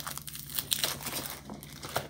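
Thin clear plastic wrapping crinkling and crackling as it is handled and pulled off a pair of spiral-bound notepads.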